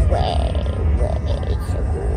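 Steady low rumble of a moving car heard from inside the cabin, with music faintly mixed over it.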